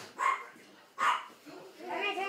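A dog barking twice, two short sharp barks about a second apart.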